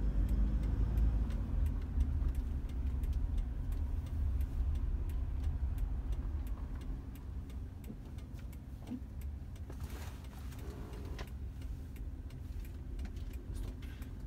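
Inside a car cabin, a low rumble of engine and road noise eases off from about halfway through as the car slows. Throughout, the turn-signal indicator ticks steadily.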